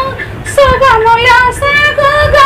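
A woman singing a song in Telugu, breaking off briefly at the start and coming back in about half a second in with held, wavering notes. A low stroke on a hand drum sounds under her voice just after she resumes.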